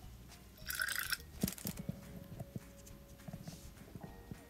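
Brief scratchy brushing about a second in, with a second short rustle just after, from a fine paintbrush and hands working on a small painted basswood carving, followed by a few light taps.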